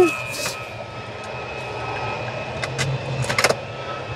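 Hard plastic toy figures clicking against each other as they are picked through in a plastic bin, with a quick run of clicks about three seconds in. Underneath is a steady low engine drone.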